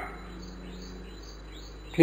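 A pause in the talk filled by the recording's steady background hiss and low hum, with a few faint high chirps.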